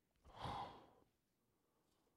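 A man's single audible sighing breath into a close microphone, lasting under a second, near the start.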